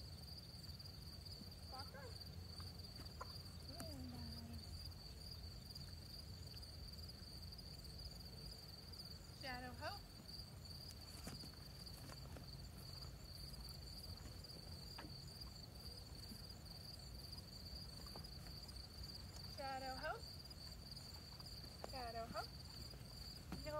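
Crickets singing in a steady, high-pitched chorus, with a few faint, short voice sounds over it.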